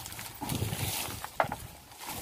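Footsteps on grassy ground and a bamboo ladder dragged and knocking along behind, in uneven low thuds, with one sharp knock about 1.4 seconds in.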